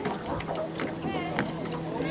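Small boat under way on a lake: a steady low hum with water splashing and slapping against the hull. Distant high-pitched voices come in about a second in.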